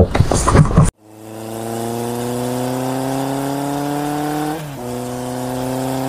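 Engine sound effect that fades in and climbs slowly in pitch as if accelerating, dips briefly in pitch about four and a half seconds in, then holds steady.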